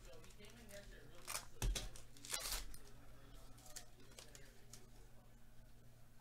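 Trading card pack being torn open and crinkled, with a thump shortly before the longest tear about two and a half seconds in. Quieter handling of the cards follows.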